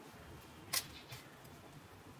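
Faint handling noise of hands working a knitted wool bootie and its yarn: a sharp, short scratchy click about three-quarters of a second in and a softer one a moment later, over a faint low background.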